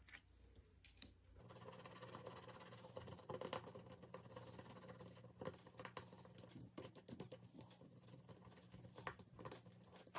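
Faint scratching of a thin metal pick scraping the silver coating off a scratch-off circle on a paper card: a quick run of short, light strokes that starts about a second and a half in.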